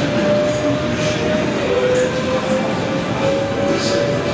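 Steady din of a busy exhibition hall: a constant wash of crowd and hall noise with no distinct voice standing out. A thin held tone runs through it, dipping slightly in pitch about halfway through and creeping back up.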